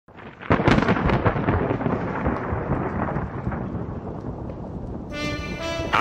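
A thunderclap about half a second in, sharp crackling that rolls on and slowly fades over several seconds. Near the end, a steady pitched tone comes in.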